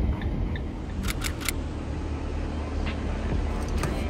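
2021 Ram Promaster 2500 cargo van giving a low, steady rumble of engine and road noise, with a quick run of three sharp clicks about a second in.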